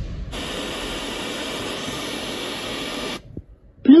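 A portable Bluetooth speaker putting out a steady static hiss that starts sharply just after the opening and cuts off abruptly about three seconds in.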